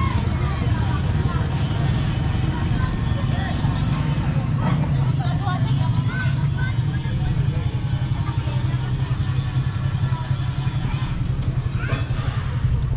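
Outdoor street ambience: a steady low rumble of motor traffic, with scattered distant voices.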